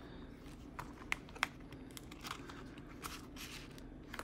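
Quiet handling of a leather ring planner: a few light clicks and rustles as a card is slid into its inside pocket, over a faint steady low hum.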